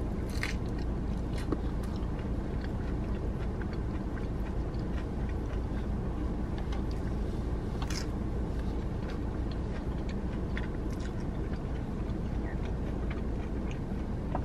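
A person biting into and chewing a cheesy jalapeño Mexican pizza, with small crunches and mouth sounds and a sharper crunch about eight seconds in. A steady low hum from inside the car sits underneath.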